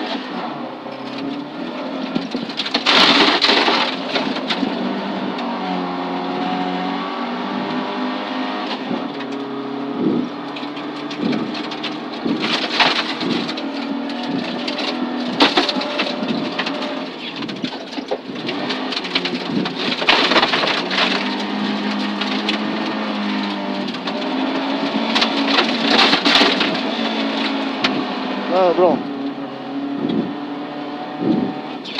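Volvo 240 rally car's engine heard from inside the cabin under hard acceleration, revs repeatedly climbing and dropping through the gears. Several short loud rushes of noise, like gravel spraying against the underbody, break through at intervals.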